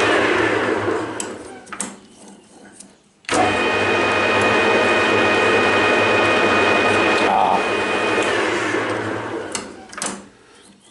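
Metal lathe running with a steady whine while a drill held in a drill chuck bores into the end of the spinning shaft. The lathe runs down a second or so in, is running again abruptly after about three seconds, and winds down again near the end.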